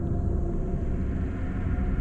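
A low, steady drone of dark ambient background music, with faint held tones above it.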